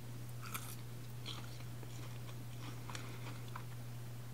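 Zefir (Russian egg-white marshmallow) being bitten and chewed close to the microphone: a few faint, short crunches spread out over a few seconds, over a steady low hum.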